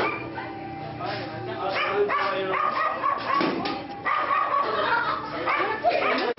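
A dog barking and yapping repeatedly, mixed with voices.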